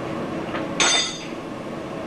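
A small hard metal piece struck once, giving a short high-pitched metallic clink that rings briefly and fades, with a faint tick just before it.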